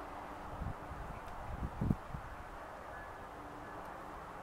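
Quiet outdoor garden ambience with a low wind rumble on the microphone and a few soft low thumps, the loudest about two seconds in.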